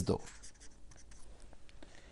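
A marker pen writing by hand on a white board: faint strokes of the tip across the surface as a word is written, stopping before the end.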